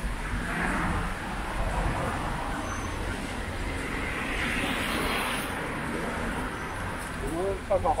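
City street traffic noise, with a passing vehicle swelling and fading about four to five seconds in. A few spoken words come near the end.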